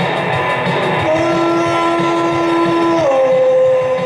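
Rock music on electric guitar and a backing beat: a long held note that steps down to a lower pitch about three seconds in, over a steady rhythm.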